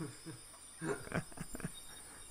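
A man's voice played back from a video, a few short syllables just under a second in, quieter than the talk around it.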